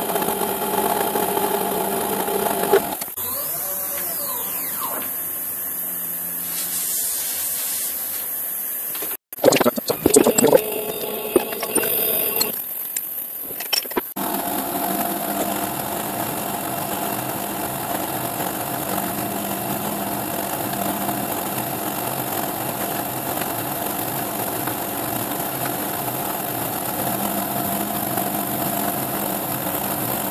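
CNC milling machine running, its spindle driving a three-degree taper cutter on a light finishing pass along an aluminium mould plate. The steady running changes about three seconds in, cuts out briefly, then gives way to a few loud irregular noises before the steady sound returns about halfway through.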